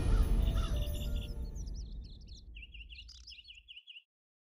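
Background music fading out while birds chirp over it. The chirps come in short high runs, then a quick even series of about six a second near the end.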